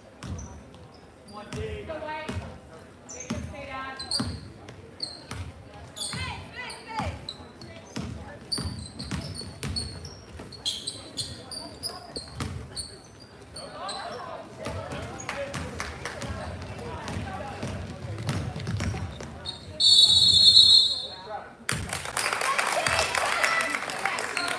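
Basketball being dribbled and bouncing on a gym's hardwood floor, with short sharp sneaker and ball sounds and voices of players and spectators echoing in the hall. Near the end a shrill referee's whistle blows for over a second, followed by louder crowd noise.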